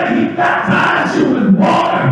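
Church congregation praising aloud: many voices shouting and calling out together, running into group singing.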